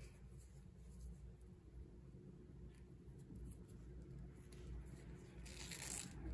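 Faint rustling and small scratchy handling sounds of bra strap elastic being worked through a strap slider by hand, over a low steady hum, with a brief louder rustle near the end.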